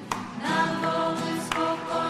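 A group singing a hymn in held notes, accompanied by a strummed acoustic guitar, with a strum about every second and a half.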